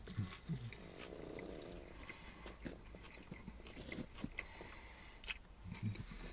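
Faint chewing of a mouthful of chicken salad wrap, with small wet mouth clicks and a couple of brief low hums near the start and just before the end.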